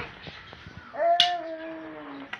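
A baby's drawn-out, high vocal sound, starting about a second in and held for over a second with a slightly falling pitch, with a brief sharp click near its start.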